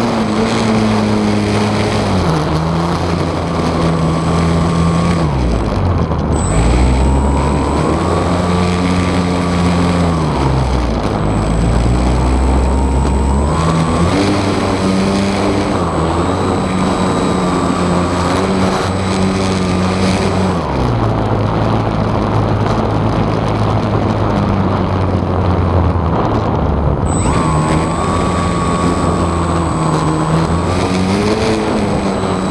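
RC airplane's motor and propeller heard from an onboard camera right behind the prop, running steadily with the pitch stepping up and down several times as the throttle changes, over wind noise.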